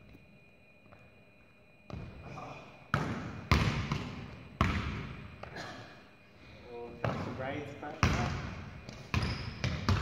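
Basketball bouncing on a hardwood gym floor, a series of sharp, echoing bangs at irregular intervals starting about two seconds in, as a player dribbles and shoots.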